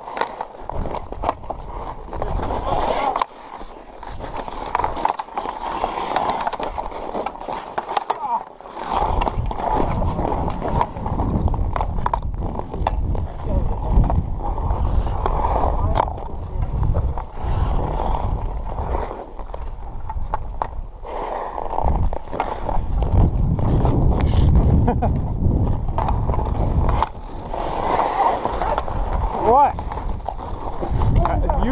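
Ice hockey skate blades carving and scraping across outdoor rink ice as players skate, with occasional sharp clacks of sticks on the puck. A low rumble comes and goes under the scraping.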